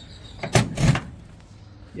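Automatic transmission shift lever being worked by hand in its console, two short clunks about a third of a second apart, about half a second in.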